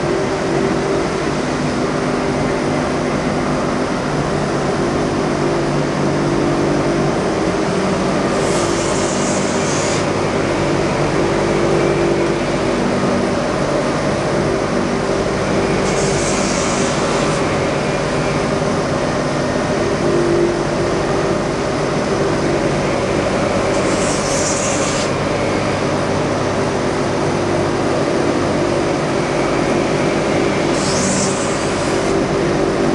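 Motor-driven wire brush wheel running with a steady hum. Roughly every eight seconds a hiss lasting about a second as a katana blade is pressed against the brush, scratching a fake hamon pattern onto the steel.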